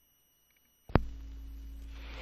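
Dead silence for about the first second, then a single sharp click as a turntable stylus is set down on a vinyl record. After the click comes a steady low hum with faint record surface noise.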